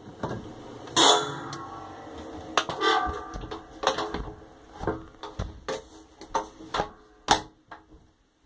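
Dishwasher door swung shut, heard from inside the stainless-steel tub: a loud clunk about a second in and another around three seconds that set the tub ringing, then a scatter of lighter clicks and knocks that fade away.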